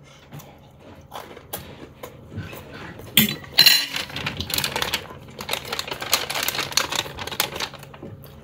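A fork clinking and scraping on a plate while a crisp toastie is cut and handled: a run of irregular small clicks, louder a little after three seconds in and denser later on.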